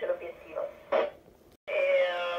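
A voice received over FM radio on the International Space Station's 145.800 MHz downlink, played through an amateur radio transceiver's speaker with the narrow, band-limited sound of radio. The signal cuts out briefly about one and a half seconds in, then the voice resumes.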